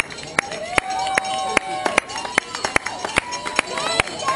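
Roadside spectators calling out and cheering to passing cyclists, one voice holding a long shout, over a run of sharp claps or knocks several times a second.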